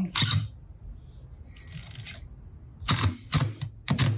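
Makita 18V brushless cordless impact driver driving a 1¼-inch screw into wood through a sliding-sheath bit holder: a short burst at the start, a quieter stretch, then three short, loud bursts of hammering near the end.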